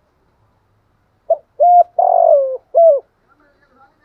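Spotted dove cooing: one four-note coo starting about a second and a half in, with a short first note and a longer third note that drops in pitch at its end.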